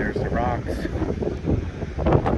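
Wind buffeting the microphone, a steady low rumble, with a brief wavering voice-like sound about half a second in.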